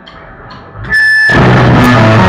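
Live rock band: a guitar chord rings out quietly with a few light ticks, then the full band of distorted electric guitars, bass and drums comes in loud a little over a second in.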